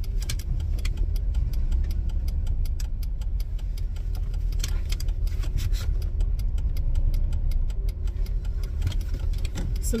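Car engine running, heard from inside the cabin as a steady low rumble, with scattered faint clicks over it.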